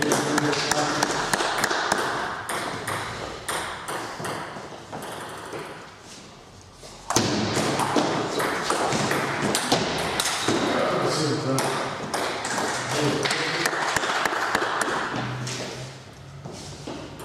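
Table tennis ball clicking back and forth off the paddles and the table in rallies, with a quieter lull about two-thirds of the way through before play picks up again.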